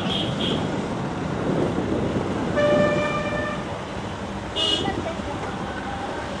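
Vehicle horn honking about two and a half seconds in, held for about a second, then a short, higher-pitched horn toot about a second later, over steady road noise from slow-moving cars.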